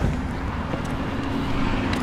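A vehicle engine running with a steady hum over rushing outdoor noise. A bump of the handheld camera comes right at the start.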